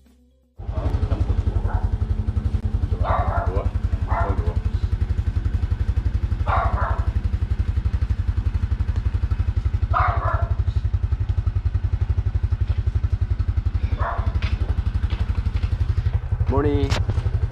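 A nearby engine idling, a steady rapid low thumping that starts abruptly about half a second in, with a few brief voices over it.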